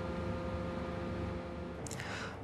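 Steady mechanical hum with several held tones. It stops near the end, where a hiss begins.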